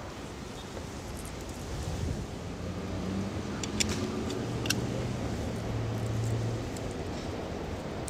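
A car engine humming nearby, growing louder over the middle seconds and then fading, over steady street noise. A few small metallic clicks near the middle come from a steel U-lock being fitted around a bicycle frame.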